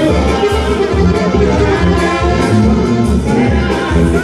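Brass band music in the Mexican banda style, with trumpets and trombones over a steady bass beat.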